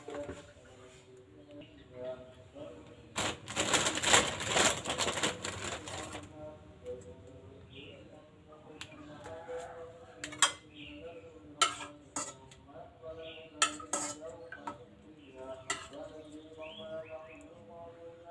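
A metal spoon clinking against a steel pot and plate in a series of sharp separate clicks, after a rustling stretch a few seconds in as banana-leaf parcels are handled at the steamer pot.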